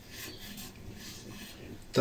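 A lemon squeezed by hand into a small metal tea strainer: quiet, irregular rubbing and squishing of the fruit against the mesh.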